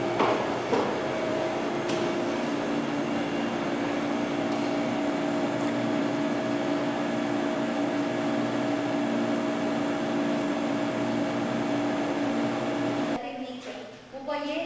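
A steady droning hum with a hiss, holding a few fixed low tones, which cuts off abruptly about a second before the end.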